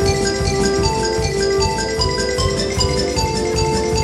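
Yamaha concert xylophone played with mallets in a quick run of short, bright struck notes as the solo line. A concert wind band accompanies with held chords and a steady beat underneath.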